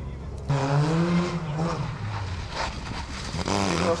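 Modified Fiat 126p's small two-cylinder engine revving hard as the car is driven through the course, coming in suddenly about half a second in, its pitch rising and falling with the throttle.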